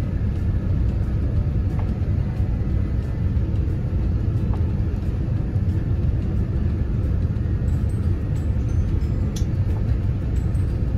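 Steady low rumble of engine and airflow noise heard inside an airliner's cabin on final approach.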